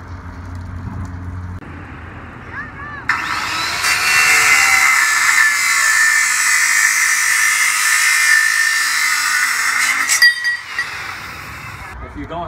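Electric circular saw spinning up and cutting through galvanized steel pipe: a loud, steady, high-pitched grinding for about seven seconds, ending with a sharp knock as the cut finishes and the saw stops.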